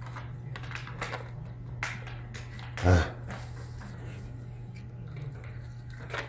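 Scattered light clicks and scrapes of fingers handling a thin metal 2.5-inch drive mounting bracket, over a steady low hum.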